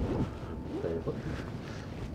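Low, steady rushing noise from an Optimus Crux canister stove's gas burner running in wind. The stove is struggling to bring its pot to a boil at high altitude. A brief faint voice sound comes about a second in.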